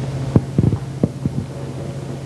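Steady low hum with a cluster of four or five dull thumps from about half a second to just over a second in.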